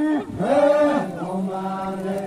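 A group of voices chanting together in long, held notes, ending on a lower note held steady through the last part.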